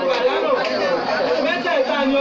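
Speech only: a man speaking continuously into a microphone.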